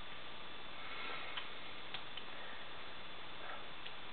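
Steady microphone hiss with a few faint, irregularly spaced clicks.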